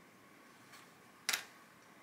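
Stacks of pinned paper-pieced fabric sections being handled. It is quiet, with one short, sharp rustle or click a little over a second in.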